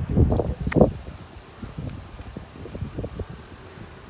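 Wind buffeting a phone's microphone, in heavy gusts during the first second, then lighter and uneven.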